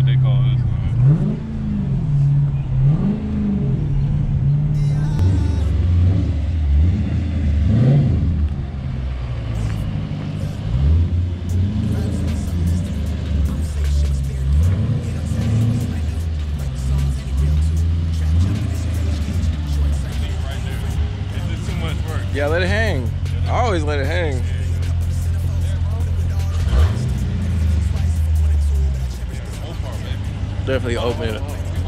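Dodge Challenger Scat Pack's 392 (6.4-litre) HEMI V8 with its resonators cut out, running with a deep steady drone and a few short revs that rise and fall in the first dozen seconds. Music plays over it.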